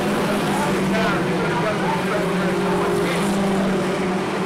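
A pack of Mini Stock race cars running together down the straightaway, their engines making a steady, even drone.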